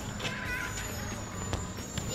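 Steady low outdoor background rumble, with a faint short chirp about half a second in and a single click about a second and a half in.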